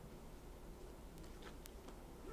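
Near silence: quiet room tone with a few faint, small clicks a little past halfway.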